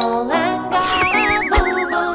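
Bright children's cartoon music, with a wobbling whistle-like sound effect that slides down in pitch from about halfway through: a cartoon dizzy effect. A short thump comes near the end.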